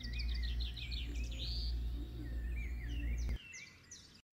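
Birds chirping in a quick run of short calls that rise and fall, over a steady low hum. The sound drops away sharply about three and a half seconds in.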